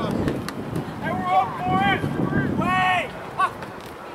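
Shouting voices on a soccer field: a string of short, high calls between about one and three and a half seconds in, over wind rumbling on the microphone.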